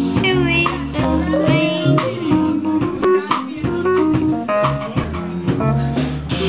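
Live nu-jazz band playing without vocals at this moment, a bass line moving under pitched instruments.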